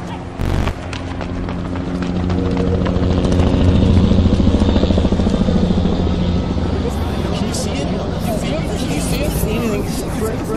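A motor vehicle engine running with a steady low drone that grows louder over the first few seconds and then holds. A short loud knock comes just after the start.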